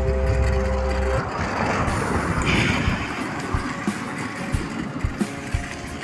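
Background music with held notes that stops about a second in, giving way to rough rushing noise and irregular knocks and rattles from a bicycle being ridden, filmed from the bike.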